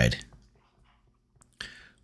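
A man's speech trailing off, then about a second of silence broken by a faint click and a short breath just before he speaks again.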